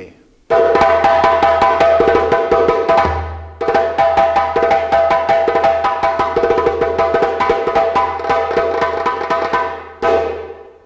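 Percussion music with dense, fast hand-drum strokes over steady pitched ringing tones and a low sustained tone. It starts abruptly about half a second in and breaks off briefly around three and a half seconds before cutting back in.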